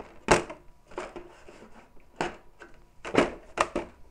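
A handful of light knocks and clicks as a hand-held RC rock racer truck is shifted and set down on a tabletop beside another RC crawler. The sharpest knock comes about a third of a second in, and a quick cluster of clicks follows near the end.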